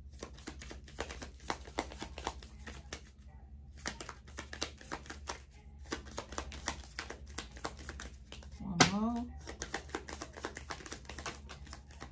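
A stack of paper letter cards being shuffled by hand: a long run of quick, irregular card flicks and clicks. A brief vocal sound breaks in about nine seconds in.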